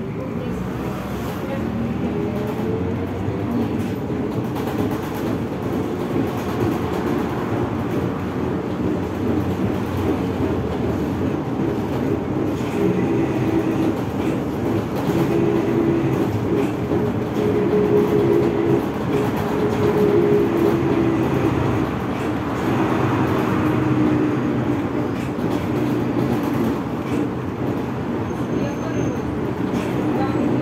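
ZiU-682G trolleybus heard from inside the passenger cabin while under way: the electric traction motor whine rises in pitch as it picks up speed at the start, then runs as a steady whine that wavers a little with speed, over a continuous road rumble.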